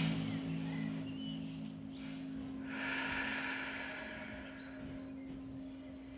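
Soft background music holding a low sustained drone note, with a long, slow audible breath about three seconds in as part of a guided breathing exercise. A few faint high chirps sound in the first two seconds.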